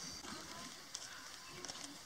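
Quiet outdoor background with a few faint clicks.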